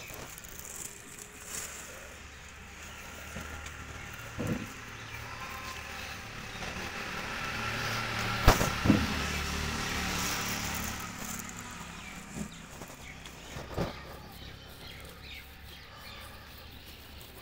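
A low rumble swells to its loudest in the middle and fades again. A few sharp knocks and rustles come from hands handling a plastic bag and garlic plants in a planter.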